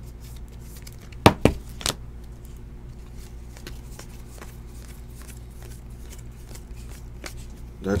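Trading cards handled by hand while being sorted through a stack: three sharp taps or clicks a little over a second in, then faint card rustles and ticks over a steady low hum.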